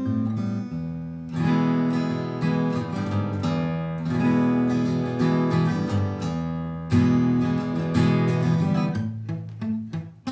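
Acoustic guitar strummed through ringing A minor, A minor seventh and E chords, with a fresh strum about every second. Near the end it thins to a few single plucked notes.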